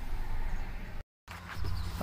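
Steady low rumbling background noise with no clear event in it, broken by a brief dead-silent dropout about halfway through.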